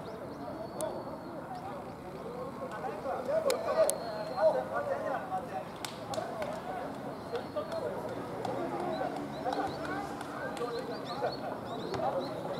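Distant rugby players' voices calling and shouting over one another across the pitch as a scrum is set, too far off to make out words, with a few louder shouts about four seconds in.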